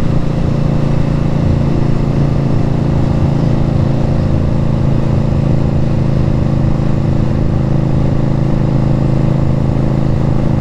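2018 Indian Scout Bobber's V-twin engine with Vance & Hines exhaust, running steadily at cruising speed while riding, with an even, unchanging note.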